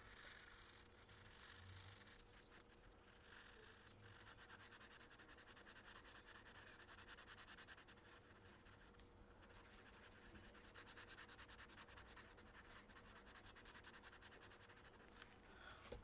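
Faint, rapid scratching of a felt-tip marker colouring in on paper, sped up.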